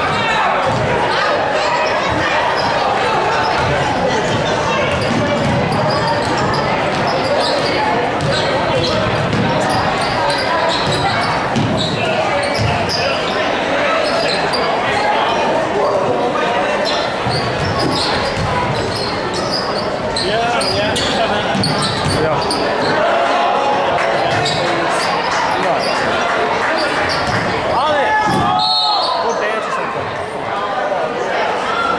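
Crowd noise in a large gym during a basketball game: many voices talking and calling out, with a basketball being dribbled on the hardwood court.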